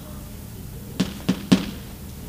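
Chalk knocking against a blackboard while writing: three short, sharp taps in quick succession, starting about a second in.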